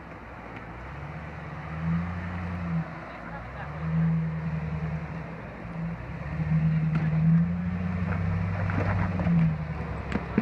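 A 2002 Jeep Grand Cherokee's engine pulling at low revs as it crawls up a steep rocky climb, the throttle swelling and easing every couple of seconds. A few sharp knocks come near the end.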